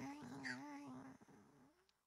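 A soft, wavering, hum-like voice sound on one low pitch, fading out after about a second and a half.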